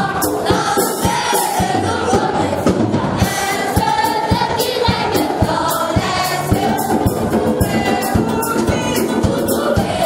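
Group of voices singing a gospel worship song together, with a steady percussive beat throughout.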